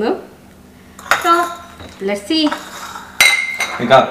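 Stainless steel chopsticks clinking, with a sudden strike about three seconds in and another near the end, each ringing briefly with a bright metallic tone.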